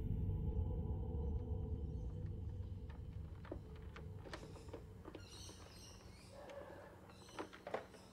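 A low drone fading out over several seconds, leaving near-quiet with faint clicks and a few soft high chirps.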